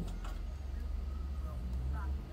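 A caller's voice, faint and thin, over a telephone line, with a steady low hum underneath.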